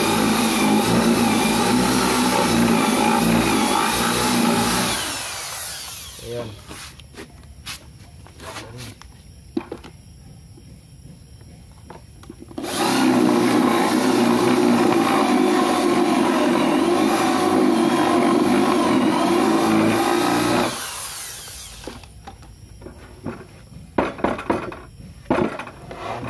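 Corded electric drill boring a 35 mm concealed-hinge cup hole into a plywood cabinet door, in two steady runs: the first winds down about five seconds in, the second runs from about thirteen to about twenty-one seconds. Between and after the runs come scattered knocks and clicks.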